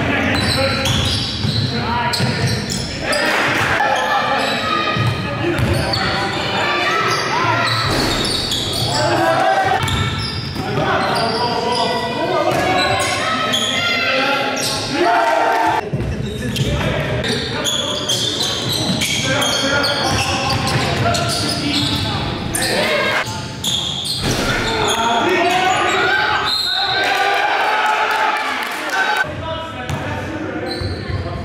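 Basketball game in a gym: the ball bouncing on the hardwood court among indistinct shouting and chatter from players and spectators, echoing in the large hall.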